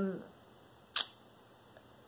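A single short, sharp click about halfway through, in an otherwise quiet room, just after a trailing 'um' fades out.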